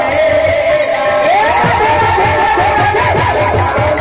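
Kirtan music on hand-played barrel drums and hand cymbals, beating steadily. From about a second in, a high voice warbles rapidly up and down for about two seconds over the drums.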